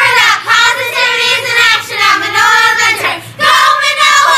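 Children singing loudly in high, held notes, in phrases about a second long with short breaks between them.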